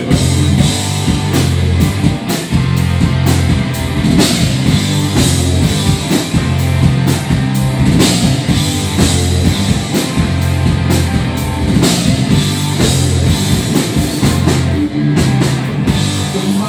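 Live rock band playing loudly: distorted electric guitars, bass guitar and a drum kit driving a steady beat.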